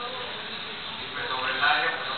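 A young child's high, wordless voice, humming or babbling, louder in the second half, over the murmur of other voices.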